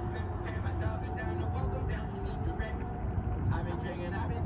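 Distant, indistinct voices of players calling across a soccer field, over a steady low rumble.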